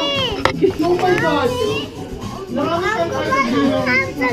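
Children and adults talking and calling out over one another, a young girl's high voice among them, with a single sharp knock about half a second in.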